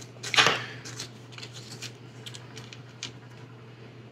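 Small tools and parts being handled and set down on a workbench: a short clatter about half a second in, then light clicks and taps. A steady low hum runs underneath.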